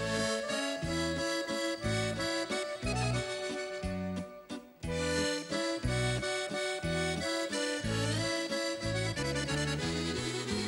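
Accordion leading a small band with electric bass in an instrumental passage, with a bouncing bass line under the accordion melody and a short break in the music a little over four seconds in.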